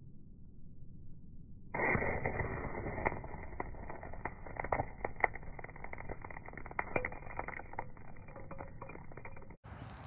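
Ferro rod scraped against a ceramic striker, showering sparks onto dried cattail fluff that flares up with crackling. The sound starts suddenly about two seconds in, dull and muffled, with many sharp crackles through it, and cuts off just before the end.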